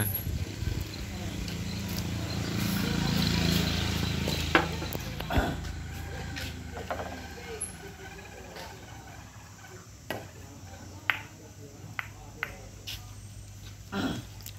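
Carom billiard balls clicking: sharp separate clicks of the cue tip striking the cue ball and the balls knocking against each other, scattered through the second half. Over the first few seconds a low rumble swells and fades.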